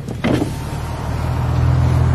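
The BMW M235i's turbocharged straight-six running at low speed, heard from inside the car with road noise. There is a short knock about a quarter second in, and a faint steady whine from about half a second in. The hum grows louder near the end.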